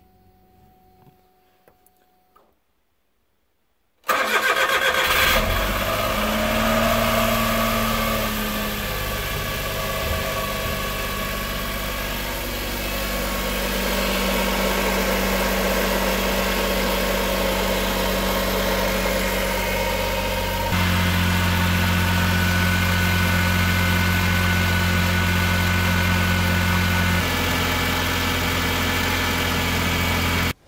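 After a few seconds of near silence, a Suzuki Carry kei truck's 657 cc three-cylinder petrol engine is cranked and starts about four seconds in, on its first start after an oil and filter change. It settles into a steady idle, and the sound steps abruptly twice near the end.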